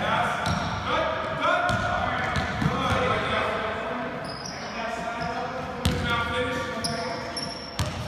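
Basketballs bouncing on a hardwood gym floor amid indistinct children's voices, echoing in a large hall. A couple of sharper impacts stand out near the end.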